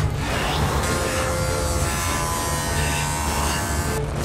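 A sharp thud of a body landing hard on stacked timber, followed by a steady, dense buzzing drone of tense background score with many held tones.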